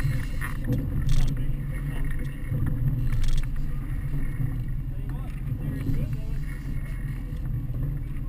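Twin Suzuki outboard motors running slowly, a steady low rumble under water and hull noise, with a couple of short knocks about one and three seconds in.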